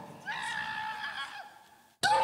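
A man's high-pitched cry, held at one pitch for about a second and fading away, as the man being held during a deliverance cries out.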